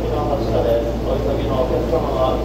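An indistinct voice, a platform announcement or nearby talk that cannot be made out, over the steady low hum of electric trains standing at the platform.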